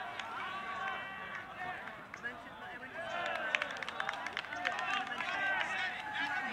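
Overlapping distant shouts and calls from players and sideline teammates on an open field, with no words clear, and a few sharp clicks about halfway through.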